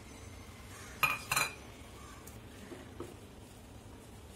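A small stainless-steel bowl clinking twice against metal, about a second in, each strike short and ringing, as ground mutton is emptied from it into a frying pan.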